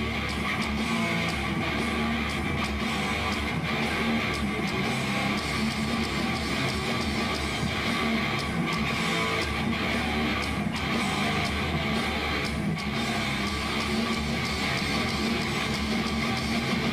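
Live heavy metal: loud electric guitars playing through stage amplifiers.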